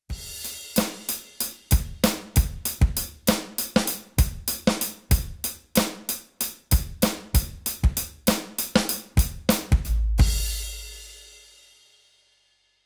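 Roland FA-08 workstation's SuperNATURAL drum kit sounds played from the keyboard: a steady drum pattern of kick, snare and hi-hat. About ten seconds in it ends on a final hit that rings out with a deep low tail and fades over about two seconds.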